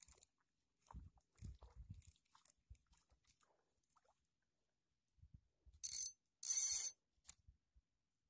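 GT 2000 spinning reel being wound in by hand: scattered small clicks and rattles from the handle and gears, then two short, loud, hissing bursts about six and seven seconds in.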